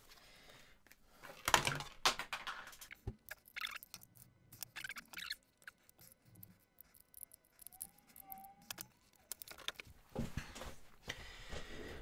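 Scattered light metallic clinks and clatter of combination spanners being handled and tried for size on the potentiometer nuts of a guitar effects pedal. The clinks come in short clusters with quieter gaps between them.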